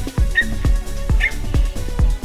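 Electronic dance music with a steady kick-drum beat, a little over two beats a second.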